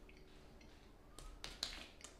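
Quiet chewing of a dry mouthful of powdered donut: a few soft wet mouth smacks and clicks, coming in the second half and loudest about a second and a half in.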